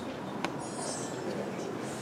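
Steady background room noise in a hall, with no speech, a single sharp click about half a second in, and a faint brief hiss just after it.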